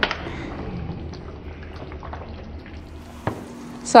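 Thick macaroni and cheese, cavatappi pasta coated in cheese sauce, being stirred in a pot with a wooden spoon: a steady, wet, sticky stirring sound.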